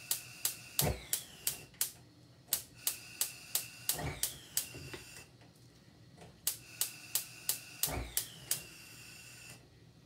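Kitchen knife cutting food over a metal pan, clicking against the pan about three times a second in short runs, each click leaving a brief ring, with a few duller thuds between.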